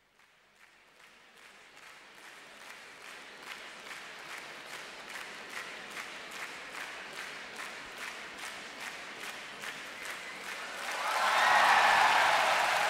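Recorded crowd applause fading in from silence and growing steadily louder, with voices rising over it near the end.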